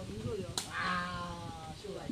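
A sepak takraw ball kicked once with a sharp crack about half a second in. Right after it comes a drawn-out vocal call lasting about a second and falling slightly in pitch.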